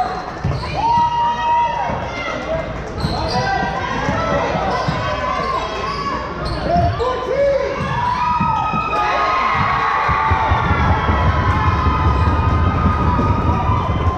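Live basketball game sound in a gym: sneakers squeaking on the hardwood court, the ball dribbling, and voices of players and spectators echoing in the hall. A heavier low rumble of running feet builds in the last few seconds.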